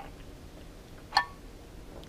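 A metal drink tumbler set down after a sip, giving one short clink with a brief ring about a second in, over quiet room tone.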